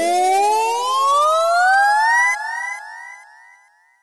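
A lone electronic tone rising steadily in pitch, like a siren, closing out a hip-hop track after the beat drops out; about two and a half seconds in it stops and its echoes repeat and fade away.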